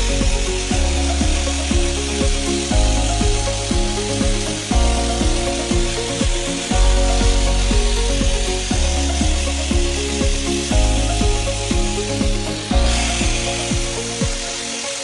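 Electric angle grinder running steadily with its disc pressed against the burnt bottom of a metal pan, grinding off the scorched crust.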